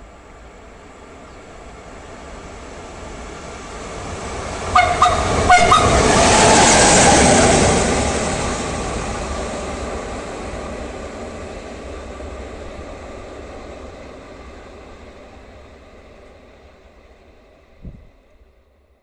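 Electric train approaching and passing through a station, with two short horn blasts just before it is closest. Wheel-on-rail rumble builds to a peak a few seconds in, then fades slowly as the train recedes.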